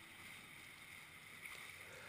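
Very faint, steady rush of water and wind from a 1998 Sailcraft Tornado catamaran sailing through choppy water, barely above silence.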